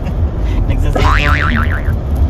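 Steady low road and engine rumble inside a moving car's cabin. About a second in, a warbling tone rises and then wavers up and down for nearly a second.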